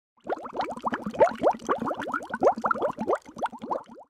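Bubbling water sound effect: a quick, dense run of rising bloops and plops, several a second. It stops abruptly at about four seconds.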